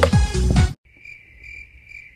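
Music with a heavy beat cuts off abruptly under a second in, leaving crickets chirping in a steady high trill that swells in slow pulses.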